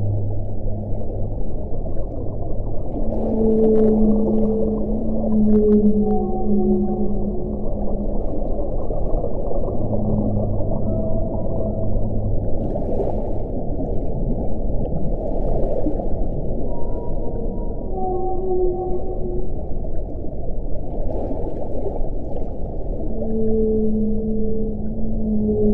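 Whale song: long, low tones held for one to several seconds at a few different pitches, sometimes overlapping, over a steady hiss. A few faint clicks come through.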